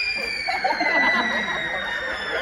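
Piccolos holding one high tuning note that slowly sags flat, with audience laughter breaking out about half a second in.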